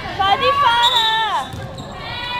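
Several high-pitched voices yelling at once as a shot goes up in a basketball game, their pitch sliding down together about a second and a half in, with a basketball bouncing on a hardwood court.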